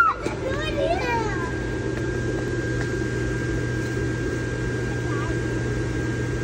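A child's high voice briefly in the first second or so, then a steady low hum and murmur of store background noise with no clear event.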